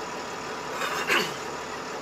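Steady hum of a car idling while stopped, heard from inside, with a short voice sound from the talk radio about a second in.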